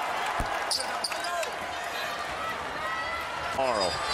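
Steady arena crowd noise over a basketball court, with a basketball bouncing on the hardwood about half a second in and a few short sneaker squeaks. A voice starts near the end.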